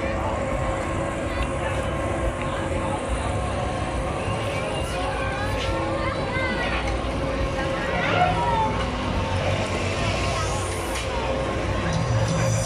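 Funfair ambience around a swinging-arm thrill ride: people's voices and high rising-and-falling cries from the riders as the arm swings, over a steady hum. The cries are thickest in the middle of the stretch.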